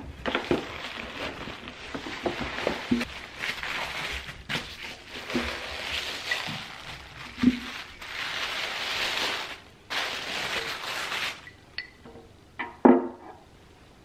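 Paper shopping bag and tissue paper rustling and crinkling as a heavy stone bowl is unwrapped, with small knocks throughout. Near the end a loud knock with a short ring as the stone bowl is set down on a hard surface.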